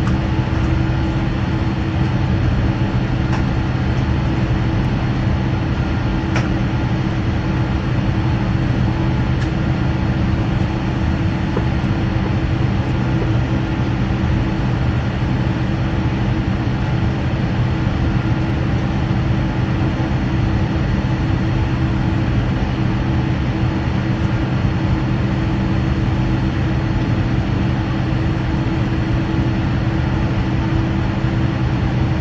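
Inside the cabin of a jet airliner taxiing slowly to the gate: a steady low drone of engines and cabin air, with a few held low tones and no change in level.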